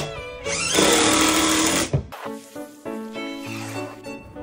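A power drill runs in one burst of about a second and a half, driving a screw into a wooden frame, over background music. The drill stops just before the two-second mark and the music carries on alone.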